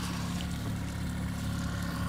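Boat's outboard motor running steadily while trolling at about three miles an hour, a low, even drone.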